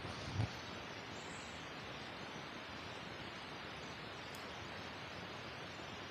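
Steady faint hiss of outdoor forest ambience, with a couple of soft footfalls on dry leaf litter near the start.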